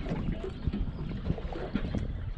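Small waves lapping and slapping irregularly against the hull of a small fishing boat, with wind rumbling on the microphone.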